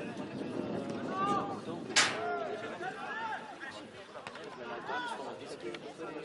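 Several voices calling and talking at once around a football pitch, overlapping and indistinct, with one sharp knock about two seconds in.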